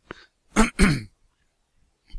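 A man clearing his throat: two short, loud, rough bursts in quick succession about half a second in.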